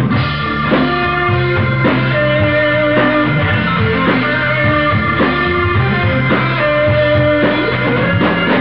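Rock band playing live in an instrumental passage with no singing: electric guitar over bass guitar and drum kit, with a steady beat.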